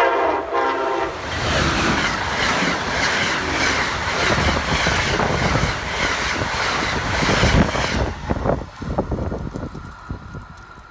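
An Amtrak ACS-64 electric locomotive sounds one short horn blast, about a second long, as it reaches the camera. Then the train passes at speed with loud wheel and rail noise and wind rush, which fades about eight seconds in, leaving a few knocks as the last car goes by.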